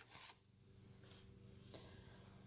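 Near silence: faint room tone with a low steady hum, and a brief soft handling sound at the very start as the paper punch is set aside.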